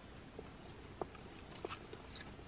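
Quiet chewing of a mouthful of pita bread with lamb, heard as a few faint, short mouth clicks.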